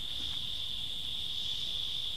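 Insect chorus of crickets or similar forest insects, a steady unbroken high-pitched trill.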